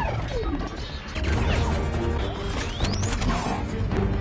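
Movie battle sound effects of giant robots fighting: crashes and heavy metallic impacts over a blast, with film score music underneath. Sliding pitch sweeps cut through the mix, one falling in the first second and one rising near the end.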